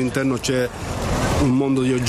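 A man speaking in an outdoor interview, broken about a second in by a brief rush of background noise that swells and fades.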